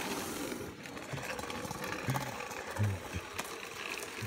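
Electric hoverboard kart running on rough asphalt: the whirr of its small electric motors mixed with the gritty rolling noise of its wheels, with scattered clicks. A brief low sound about three seconds in.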